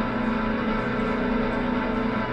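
Live band playing a slow, sustained ambient drone on amplified instruments: held tones that ring on steadily, with no drum beats.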